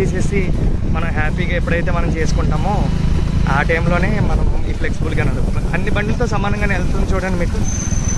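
Steady low rumble of motorcycles riding along a rough road, with a person's voice over it throughout.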